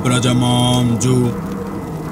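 A man chanting a mantra in a low, steady monotone, with long held notes that break and restart about once a second.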